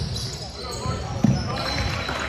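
A basketball bouncing on a hardwood gym floor, with one sharp, loud bounce about a second in, amid players' voices.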